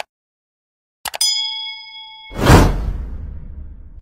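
Subscribe-button animation sound effects: two or three quick mouse clicks about a second in, then a bell ding that rings for about a second, then a loud whoosh that swells and fades away.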